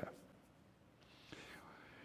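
Near silence in a pause in a man's speech, with a faint breath-like sound in the second half.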